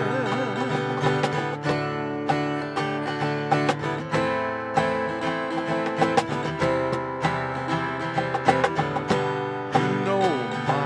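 Acoustic guitar strummed with a steady beat of hand strikes on a cajon: an instrumental passage between sung lines of a worship song.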